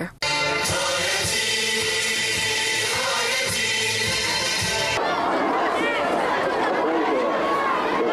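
A large crowd of women chanting together in unison, choir-like, with long held notes; about five seconds in it changes abruptly to a looser mass of many voices chanting and calling over one another.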